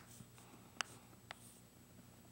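Chalk on a chalkboard as a letter is written: three short, sharp taps with quiet between them.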